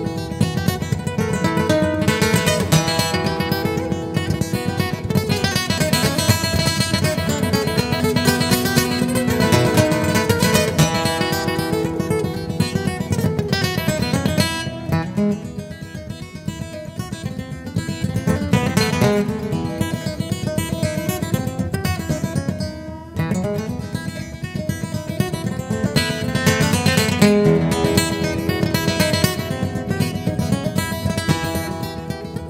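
Solo acoustic guitar played fingerstyle: an instrumental tune of quick plucked notes, getting softer for a few seconds about halfway through and breaking off briefly before picking up again.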